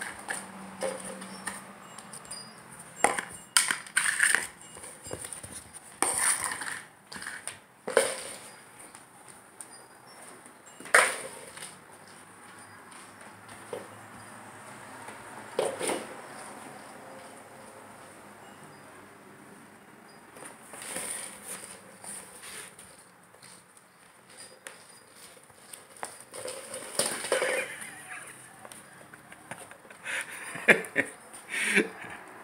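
A plastic cup knocked and pushed about on a hardwood floor by a border collie puppy trying to get food out of it: irregular knocks and clatters, several close together three to four seconds in, then scattered through the rest.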